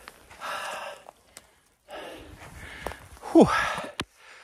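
A man breathing out hard twice, then a short "hoo" falling in pitch near the end, the sound of effort while working a rubber boat past fallen trees on the river.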